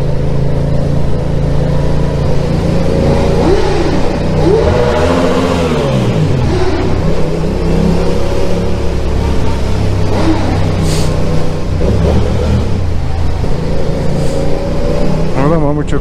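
Motorcycle engine running under way, its pitch rising and falling as it is revved up and eased off, most plainly about five seconds in.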